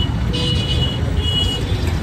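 Road traffic: a steady low engine rumble with several short, high-pitched horn toots.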